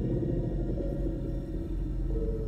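Low, steady rumbling drone from a horror film's soundtrack.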